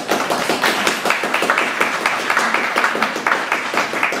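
Audience applauding: a crowd clapping steadily, many claps overlapping, which tails off near the end.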